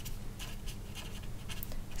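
Felt-tip marker writing on paper: a run of short, faint scratchy pen strokes as a word is written out.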